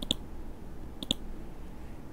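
Computer mouse clicked twice, about a second apart; each click is a quick press-and-release snap.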